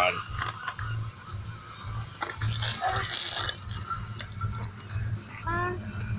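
Low steady rumble of a car interior, with a short rustle of a foil snack wrapper being handled about two and a half seconds in and a brief voice near the end.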